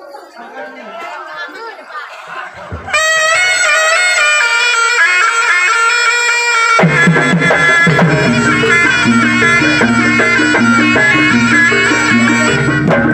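Javanese jaranan accompaniment music. A loud, reedy wind-instrument melody, typical of the slompret shawm, starts abruptly about three seconds in. Drums and low gamelan percussion join with a steady beat about seven seconds in. Before the music starts, crowd chatter can be heard.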